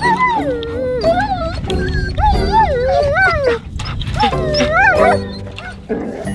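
A dog howling and yowling in about four wavering phrases, its pitch sliding up and down, over background music.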